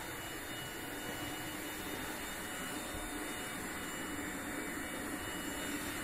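Vorwerk Kobold VK7 cordless vacuum cleaner running steadily with an even whooshing motor noise.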